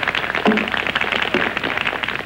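Audience applause: a dense, irregular patter of many hands clapping.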